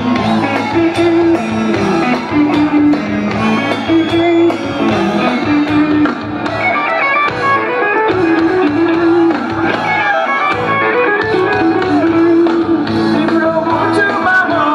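Live band playing an instrumental, guitar-led passage through a large PA: a melody of held, stepping notes over steady chords and drums, with no singing.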